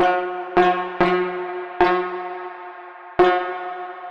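Nebula Clouds Synthesizer (a Reaktor software synth) playing a bell-like patch: five struck notes of the same pitch at uneven intervals, each with a sharp attack and a long ringing decay, the last ringing out.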